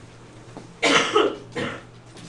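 A person coughing twice: a sudden loud cough just under a second in, then a weaker one about half a second later.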